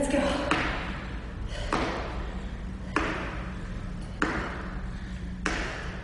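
A person doing a jumping HIIT exercise on a wooden studio floor: a sudden sound about every 1.2 s, each dying away over about a second.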